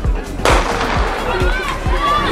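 A starter's pistol fires once, a sharp crack about half a second in, starting a sprint race. Background music with a steady thumping beat plays throughout.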